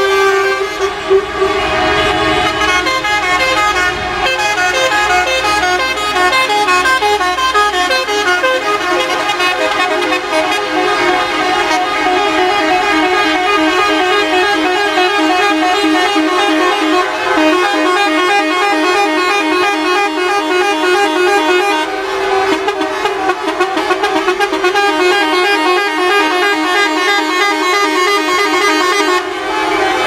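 Many vehicle horns from a long convoy of minibuses, buses, trucks and taxis honking together, a dense mix of overlapping horn tones that goes on without a break, sounded in salute to fallen soldiers and police.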